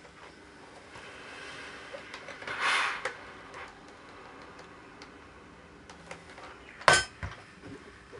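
Handling sounds at a sewing and ironing table: a short rustling hiss about two and a half seconds in, then a sharp knock of a hard object set down on the table about seven seconds in, with a few lighter clicks around it.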